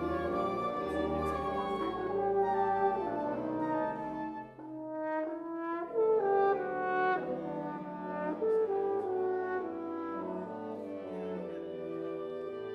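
Wind ensemble of woodwinds and brass playing a rehearsal passage in sustained chords, thinning briefly about four and a half seconds in, then coming back with a loud entry at about six seconds.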